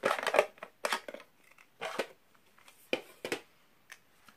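A small cardboard gift box being opened and its contents handled by hand: several short bursts of cardboard and paper rustle and scraping.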